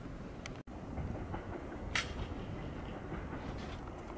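Electric commuter train running in toward the station: a steady low rumble with a few faint wheel clicks and a brief hiss about two seconds in. It follows a momentary dropout in the sound just over half a second in.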